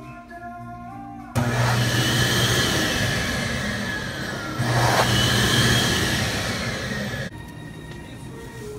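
Electric hand dryer blowing: a loud rush of air with a thin whine, switching on suddenly about a second in, surging again halfway through and cutting off shortly before the end.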